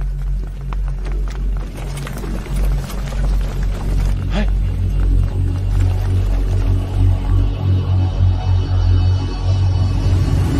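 Tense dramatic background score built on a deep, sustained low drone, with faint ticking accents in the first few seconds and a brief gliding tone about four seconds in.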